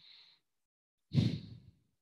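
A man's breath on a close microphone: a faint breath at the start, then a louder sigh about a second in that lasts about half a second.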